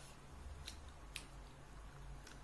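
Quiet room tone: a low steady hum with a few faint sharp clicks, two of them about half a second apart.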